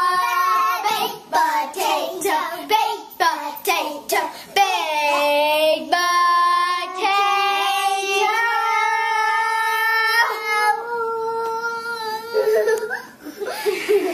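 A child singing a slow song, with several long held notes through the middle.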